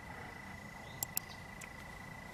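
Two quick computer-mouse clicks about a second in, over a faint steady high-pitched tone.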